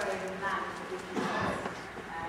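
Indistinct voices in a reverberant hall, with a few hard knocks mixed in.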